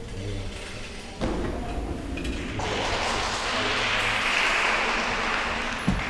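Clapping in a large sports hall from a small group, the gymnasts applauding one another, starting about two and a half seconds in. A single thump comes about a second in.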